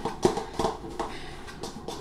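Fork tapping and scraping against a bowl while flaking drained canned tuna: a string of short, irregular clicks, several in two seconds.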